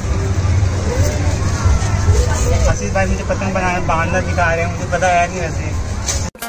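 Voices talking over a steady low rumble.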